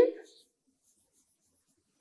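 Near silence after the end of a spoken word, with a few faint, light taps of a stylus on an interactive whiteboard screen in the first second.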